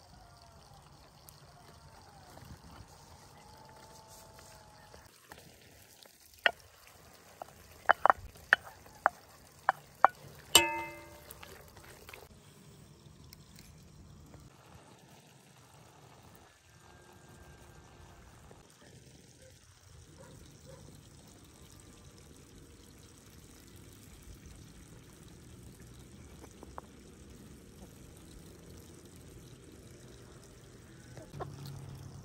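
Chicken pieces frying in a hot cast-iron pot with a faint, steady sizzle. From about six seconds in comes a quick run of sharp knocks as a utensil strikes the pot, and the last knock rings out as a metallic clang.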